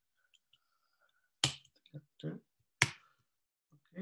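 Two sharp keystrokes on a computer keyboard, about a second and a half apart, with a few fainter taps between them.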